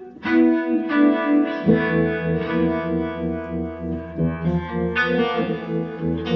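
Electric guitar played live through effects pedals: a run of ringing notes and chords, with a low held note joining about two seconds in.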